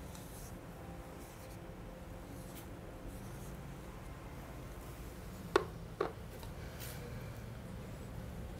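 Faint rubbing of a cloth wiping a small tea container, then two light clicks about half a second apart a little past halfway.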